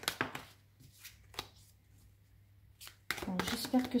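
A deck of oracle cards being shuffled by hand: a few soft clicks and snaps in the first half-second, then two brief ticks about a second and a half and three seconds in.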